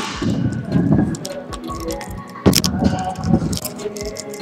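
Stunt scooter wheels rolling and rumbling down a wooden skatepark ramp and across the floor, with rattling clicks and a sharp clack about two and a half seconds in.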